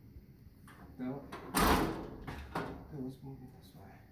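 Metal front frame of a gas fireplace being lifted off, with small knocks and one loud, short scraping clatter about a second and a half in as it comes free. The frame's wall bracket pulls out along with it.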